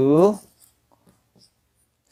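A brief spoken word, then a few faint ticks of a marker writing numbers on a whiteboard.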